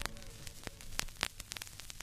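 Vinyl record surface noise after the music has ended: faint hiss and crackle with scattered sharp clicks over a low, steady hum from the 12-inch 45 rpm disc as it plays on.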